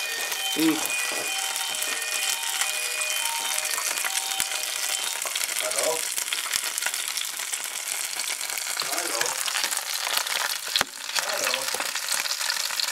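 A cutlet sizzling and crackling steadily in hot fat in a frying pan.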